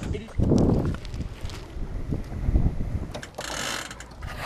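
Wind buffeting the microphone: low rumbling gusts, loudest about half a second in, with a few small knocks and a brief hiss near the end.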